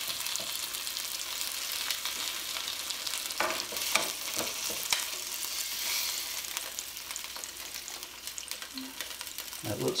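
Chicken thighs sizzling in olive oil in a hot non-stick skillet, a steady hiss. A few sharp clicks of metal tongs come in the middle as the pieces are lifted out of the pan.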